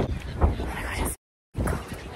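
Wind buffeting a phone microphone over outdoor street ambience, a low rumbling rush. It breaks off into silence for a moment a little over a second in, then comes back.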